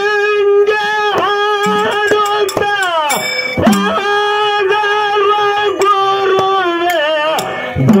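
A male singer sings a Kannada dollina pada (devotional folk song) into a microphone, holding long, high notes that slide up and down between phrases. Drum strokes accompany him at intervals.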